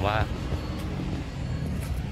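A man's brief spoken word, then a steady low rumble of outdoor background noise picked up by a phone microphone.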